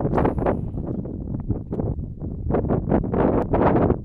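Wind buffeting the camera's microphone in irregular gusts over a constant low rumble, strongest right at the start and again through the second half.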